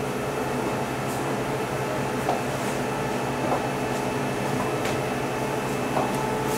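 Steady machine hum with several constant tones over a low rumble, with a few faint soft taps.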